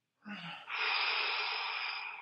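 A man's long, audible breath through the mouth during the effort of a slow exercise rep. It opens with a short catch in the throat, then runs as a loud airy rush that fades out over about two seconds.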